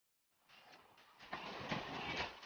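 After a moment of silence, the running noise of a suburban electric multiple unit (EMU) train fades in and grows louder, heard from on board, with a few sharp clacks of the wheels.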